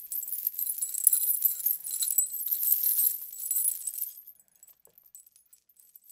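High-pitched metallic jingling and clinking, dense and continuous, fading away about four seconds in.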